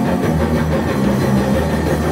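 Rock band playing live: electric guitars, bass and drums in an instrumental stretch without singing.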